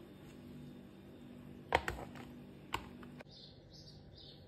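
Two sharp clicks about a second apart over a low steady hum, which stops about three seconds in; faint high chirps follow near the end.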